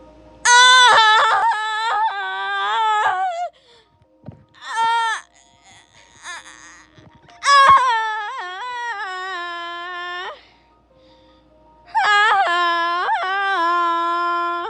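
A singer's wordless, high 'ah-ah' vocalising in long wavering phrases with gliding pitch and short breaks between them, over a faint backing track: the siren-call opening of the song, sung before the first lyrics.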